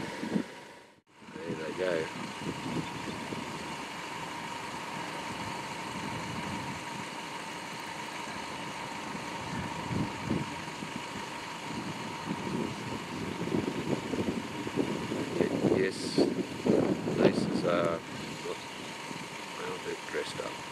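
Tractor engine running steadily, with people's voices briefly about two seconds in and again near the end.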